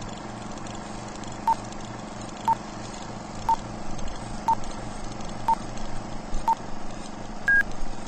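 Old-film countdown leader sound effect: a short beep once a second, six at the same pitch, then a seventh, higher beep near the end, over a steady hum and hiss.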